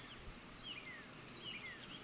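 Faint recorded birdsong over a soft, even hiss of running water. A quick run of high chirps comes in the first half-second, then a few short whistles sliding downward. It is a background bird-and-water ambience track with its mid-range pulled down by an equalizer.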